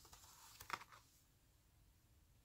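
Near silence with a few faint clicks of handmade cardstock cards being handled, the sharpest a single tap about three quarters of a second in.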